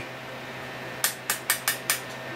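Rotary time-base switch on a Tektronix 545A oscilloscope being stepped through its detents: about five quick, sharp clicks within a second, starting about halfway through. A steady low hum runs underneath.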